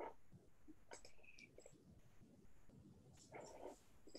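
Near silence: faint room tone over a video-call microphone, with a few faint, short sounds.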